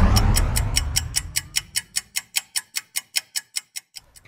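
Clock-ticking sound effect, fast and even at about seven ticks a second, marking time racing forward; it opens with a deep boom that dies away over the first two seconds.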